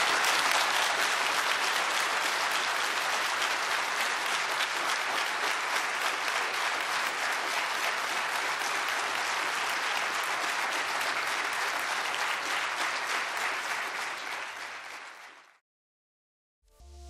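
A large audience of seated members applauding: sustained clapping of many hands, which fades near the end and then cuts off abruptly.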